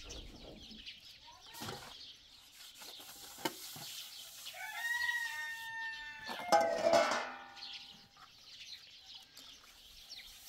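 A rooster crows once, a long call about halfway through that rises, holds and breaks up at the end. Before it come a few light clinks of metal dishes being washed.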